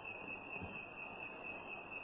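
Faint background hiss with a thin, steady high-pitched whine from the recording itself, in a pause between spoken sentences.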